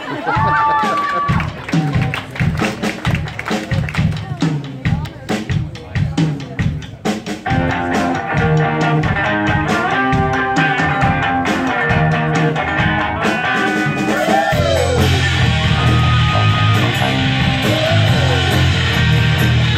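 Live amplified rock band: scattered drum hits and guitar notes, then sustained guitar notes, and about fourteen seconds in the full band comes in loud with electric guitars, bass and drums.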